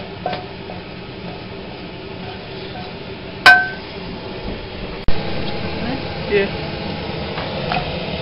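A wooden spoon scraping fried meat out of a metal frying pan, then the pan struck once about three and a half seconds in: a loud clang with a short ring. After an abrupt cut, steadier frying-pan noise follows.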